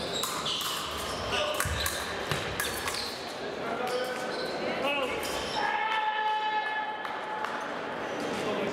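Épée fencers' feet stamping and sliding on the piste, with sharp clicks from blades, in a large echoing hall with voices in the background. About six seconds in, an electronic scoring-box buzzer sounds steadily for about a second and a half.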